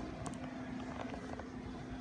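A steady low hum with a faint held tone, broken by a few light clicks.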